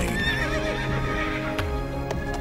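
Music with sustained notes, and a horse neighing once in the first second, a high wavering cry.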